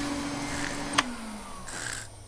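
Cartoon vacuum cleaner running with a steady hum. About a second in there is a sharp click, and the motor winds down, its pitch sliding lower as it is switched off.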